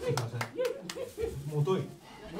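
A handful of sharp hand claps from a small audience in the first second, as a guitar song ends, with a man's voice over and after them.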